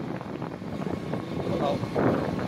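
Motorcycle riding along a road, its engine and the rush of wind over the microphone blending into a steady noise.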